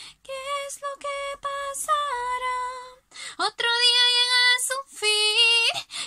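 A woman singing solo a cappella, with no accompaniment: long held notes that shift in pitch, with a short pause about three seconds in.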